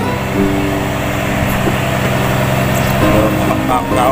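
A fishing boat's engine running, a steady low hum, with music and a voice over it; the voice comes in near the end.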